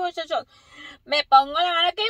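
A woman's voice talking, with no other sound standing out.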